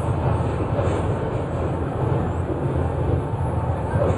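A loud, steady low rumble with no clear tone or beat, played over a hall's sound system.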